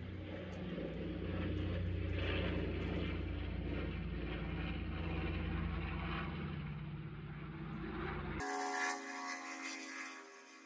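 A steady low engine-like drone with an even pitch, running on until it cuts off abruptly about eight seconds in, when a thinner, higher hum takes over.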